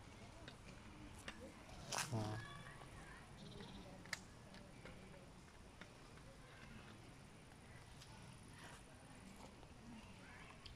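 Faint, steady sound of a shallow stream running over pebbles, with a short voice-like call about two seconds in and a few light clicks.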